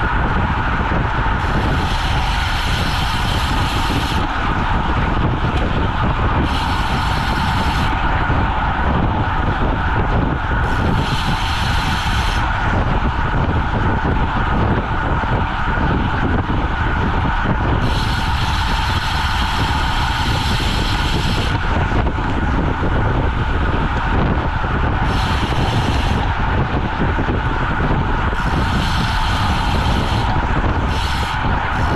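Wind rushing over a bike-mounted action camera's microphone at speed on a road bike, with tyre noise on the asphalt. Several times a high ticking buzz comes in for a second or a few seconds: the rear freehub ratcheting while the rider coasts.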